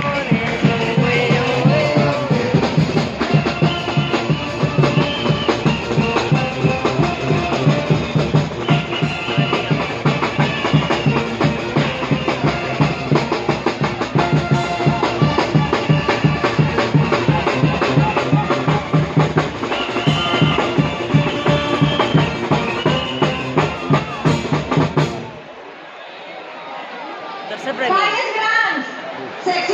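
Loud music with a steady drum beat playing over a crowd, cutting off suddenly about 25 seconds in, leaving only crowd voices.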